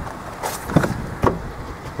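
Rear door of a 2015 Chevrolet Malibu sedan being opened: three short sharp clicks and knocks from the latch and handle, the loudest just under a second in.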